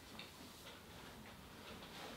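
Near silence: quiet room tone with a few faint, light ticks.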